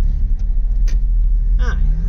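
Vauxhall Astra GTE 16v's 16-valve four-cylinder engine heard from inside the cabin, a steady low rumble as the car creeps along at low speed in a queue.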